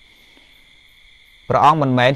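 Only speech: a pause of about a second and a half, then a man's voice resumes the Khmer dharma talk. A faint steady high-pitched whine sits underneath throughout.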